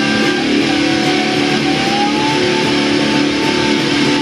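Distorted electric guitar played through an amplifier, holding a sustained chord while a high note bends slowly upward from about a second and a half in and is held.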